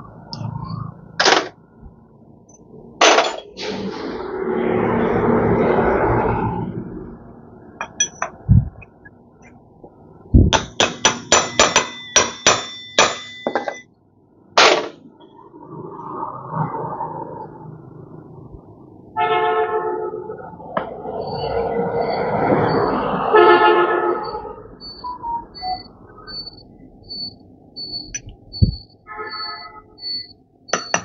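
Metal tools and parts clinking and clanging in repair work, with a quick run of ringing metallic clicks near the middle. Two noisy swells of a few seconds each come in the first and second halves. A faint high beep repeats in the later part.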